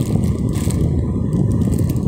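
Clear plastic bag crinkling as it is handled and turned, in short crackles over a steady low rumble.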